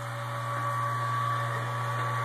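Electric wort pump running steadily, a low hum with a thin steady whine over it, as hot wort recirculates through a Blichmann Therminator plate chiller.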